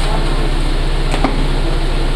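A steady low hum fills the room, with one short sharp tap a little over a second in.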